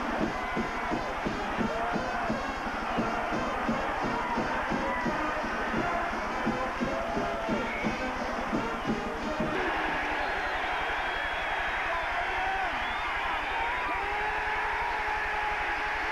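Stadium marching band playing over a cheering crowd after a touchdown: a steady beat with brass notes, moving to longer held notes about ten seconds in.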